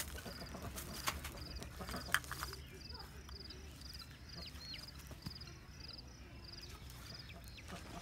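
A few light knocks and handling noises from PVC pipe, the sharpest about one and two seconds in. Under them, a faint high chirp repeats about twice a second.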